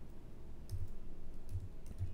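About four light, separate clicks of computer keys in the second half, with a quiet room tone before them.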